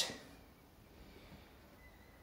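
Near silence: quiet room tone, with a few faint low knocks about a second in.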